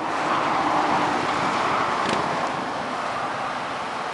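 Steady rushing noise of road traffic, strongest in the first couple of seconds and easing slightly after.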